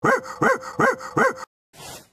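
A man's voice barking like a dog: four quick barks, each rising and falling in pitch, about three a second, then a short break.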